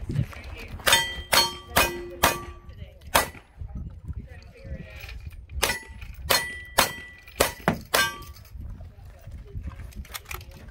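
Revolver shots at steel targets, each crack followed at once by the ring of a struck steel plate. A quick string of five shots comes in the first few seconds, then after a pause of about two seconds another string of five.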